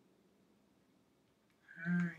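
Quiet room tone, then near the end a brief, steady wordless hum of a woman's voice, an 'mm'.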